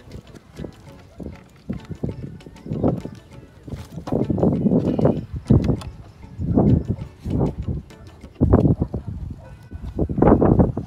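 A skate tool and hands working skateboard truck hardware: irregular metal clicks and knocks as the mounting nuts are turned, with louder handling bursts about four seconds in and again near the end.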